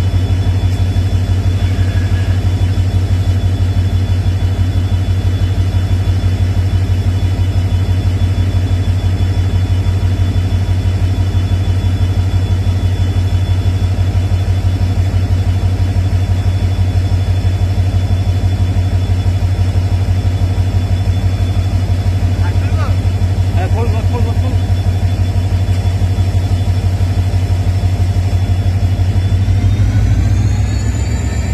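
An engine idling steadily close by, with a loud, even low throb.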